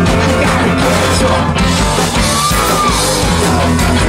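Garage rock band playing loud live: electric guitars and drums, with the singer's lead vocal over them.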